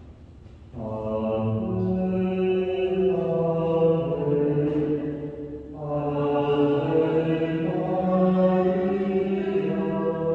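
Slow sung chant: a single melodic line of long held notes, starting about a second in, with a brief pause just past the middle before the next phrase.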